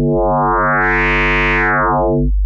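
ASM Hydrasynth Explorer synthesizer sounding one low held note with many harmonics while its FM mutator depth is turned: the tone grows much brighter over the first second, then darkens again near the end.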